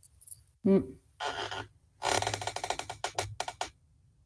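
A rapid run of light clicks for about a second and a half, coming through a video call, after a brief murmured 'mm'.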